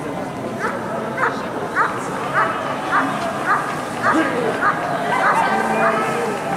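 A long-coated German Shepherd dog barking in a steady rhythm, about ten barks at a little under two a second, over background crowd chatter.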